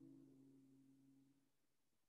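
Near silence: the faint tail of a low, steady nasal hum from Bhramari (humming-bee breath) pranayama fades away in the first second and a half.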